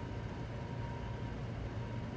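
Faint steady room tone of a home recording setup: a low hiss with a faint steady electrical hum.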